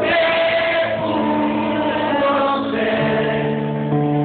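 A song performed live: singing over held keyboard chords, the chord changing about three seconds in.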